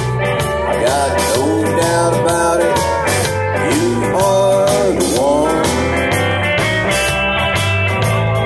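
Live country-rock band playing an instrumental passage: drum kit with cymbals, bass, and guitars, with a lead line that slides and bends in pitch.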